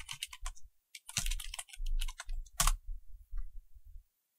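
Computer keyboard typing: a short terminal command is keyed in quick bursts of clicking keystrokes and entered.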